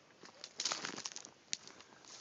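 Faint rustling and crackling of dry grass and reeds being pushed through, a quick cluster of brittle crackles about halfway through.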